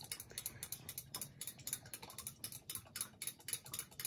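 Faint, rapid, irregular ticking, several clicks a second.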